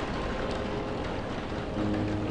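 Steady rain, an even hiss. The piano music drops out briefly, and a new low piano chord comes in near the end.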